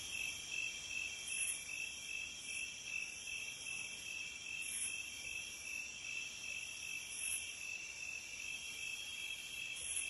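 Night chorus of crickets: several high-pitched, steady trills layered together, the lowest with a rapid, even pulse and the highest swelling every couple of seconds.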